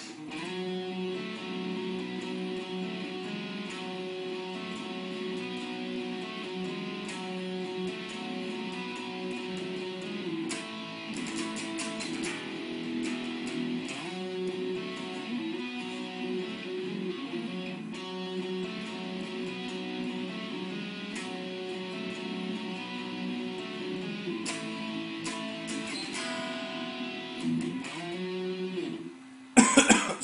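A single unaccompanied guitar playing the second guitar's part of a song's outro: a repeating figure of held, ringing notes that changes pitch every second or two and stops shortly before the end.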